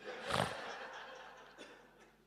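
Congregation laughing: a swell of mixed laughter about a third of a second in that fades away over the next second or so.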